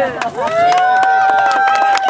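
A child's long, high-pitched yell held on one note for over a second, rising as it starts and dropping away at the end, with a few sharp claps among it.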